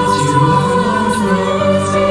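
Mixed high school choir of boys and girls singing held chords in harmony, a virtual choir built from voices recorded separately at home and mixed together.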